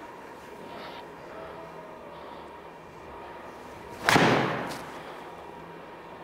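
A PXG 0317 ST blade iron striking a golf ball off a hitting mat: one sharp crack about four seconds in with a short ring-out. The player judges the strike pretty good, though slightly off the heel.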